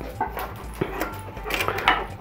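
A dog close to the microphone, breathing and nosing around, with a short whine near the start. A few light clicks of a hand tool on the bike's crank bolt sound alongside.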